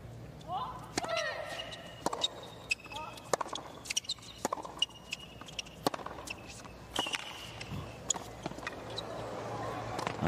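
Tennis ball struck by rackets and bouncing on a hard court during a serve and rally: sharp, separate pops about every half second to a second.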